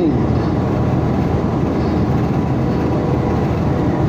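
Steady road and tyre noise heard inside a car's cabin while cruising at highway speed, a constant low rumble with no break.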